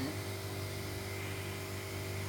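Steady low mechanical hum with a faint higher drone, unchanging throughout, as from a running machine.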